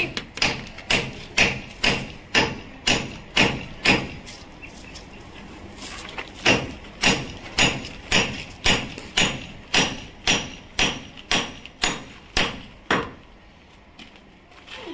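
A hand hammer striking a ribbed steel bar held against a brick wall, chiselling into the brickwork: sharp metal-on-metal blows at about two a second. The blows pause for about two seconds in the middle, then resume and stop shortly before the end.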